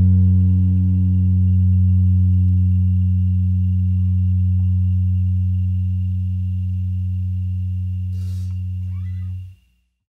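The song's last note held on amplified electric instruments, one steady low tone slowly fading as its upper overtones die away, with a faint steady high tone above it. A short noise comes about eight seconds in, and the sound cuts off suddenly near the end.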